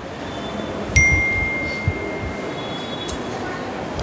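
A single struck ringing tone, like a small chime or bell, about a second in. It rings on one steady pitch for about two seconds as it fades, over a low background hum.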